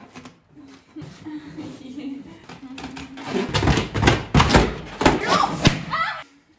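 Large latex balloon squashed under two people sitting and bouncing on it: a drawn-out rubbing squeak first, then a run of heavy thuds and squeaks from about three seconds in.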